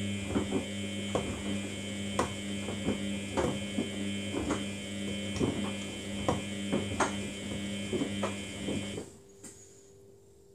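Samsung front-loading washing machine turning its drum in a wash tumble: a steady electric motor hum with irregular knocks and splashes as the wet laundry drops in the water. The motor stops about nine seconds in, as the drum pauses before reversing.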